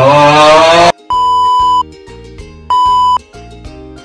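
A loud yell rising in pitch, cut off about a second in. Then two loud, steady, high beep tones like a censor bleep: the first about two-thirds of a second long, the second about half a second. Soft background music with a steady beat runs under them.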